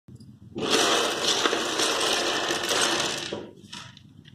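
Plastic building blocks clattering as a heap of them tumbles and scatters: a dense rattle of many small hard pieces starting about half a second in and dying away after about three seconds.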